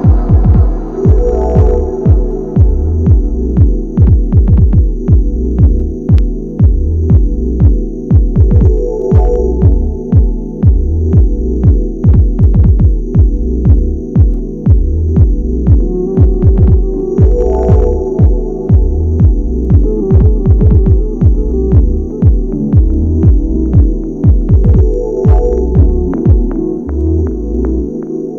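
Dub techno mix: a steady kick drum at about two beats a second under a deep, looping chord pattern, with a high shimmer returning about every eight seconds.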